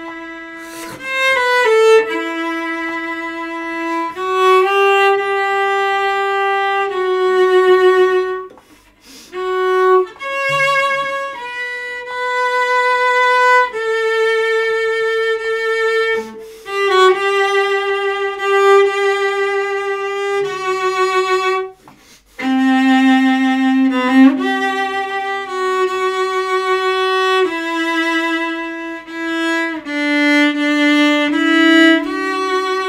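Solo cello bowed in a slow melody of long held notes with vibrato, sight-read for the first time. The playing breaks off briefly twice.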